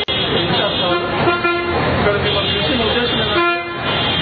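Street traffic with vehicle horns honking repeatedly, several long steady toots, over engine noise and voices.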